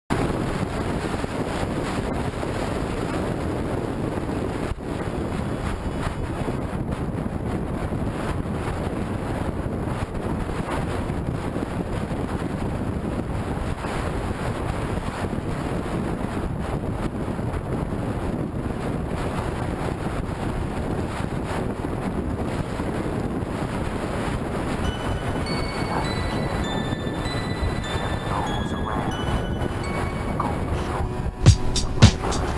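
Steady wind rush over the microphone with road and engine noise from a motor scooter riding at speed in traffic.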